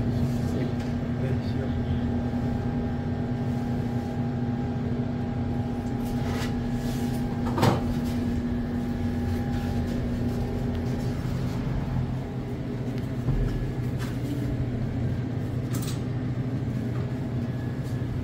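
Refrigerated display coolers humming steadily with a low tone. A sharp knock comes about eight seconds in and another click near the end.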